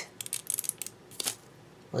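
Paper crackling and ticking as a strip of computer paper is wound onto a paper bead roller: a quick run of short clicks in the first second, then one more a little later.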